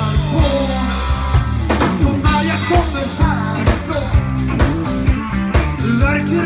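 Live rock band playing a song: a steady drum-kit beat, bass, electric and acoustic guitars, with singing over them.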